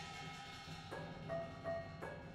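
Live percussion music: sticks strike pitched, ringing percussion, with a few sharp strikes in the second half whose tones sustain and overlap.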